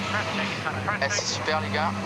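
A steady low engine-like hum with faint voices talking over it.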